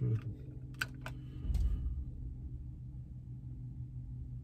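A few sharp plastic clicks, about three within the first two seconds, from a hand working the switches of a car's overhead light console, with a soft low thump near the last click. A steady low hum from the car runs underneath.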